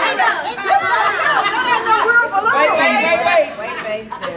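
Several people talking over one another in overlapping, indistinct chatter.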